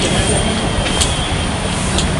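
Steady outdoor background noise, with a faint high whine running through it and one short click about a second in.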